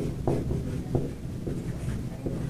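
Dry-erase marker writing on a whiteboard: a run of short separate strokes, about three a second.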